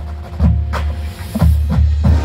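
High school marching band playing: several heavy drum hits over a low held bass note, with fainter held wind notes above.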